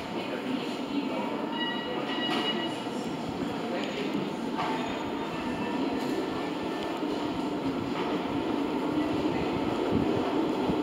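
A steady low rumble throughout, with a few faint high squeaks in the first few seconds.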